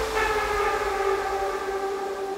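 Trance breakdown: one steady, sustained synthesizer note with its overtones, slowly fading, with no beat under it.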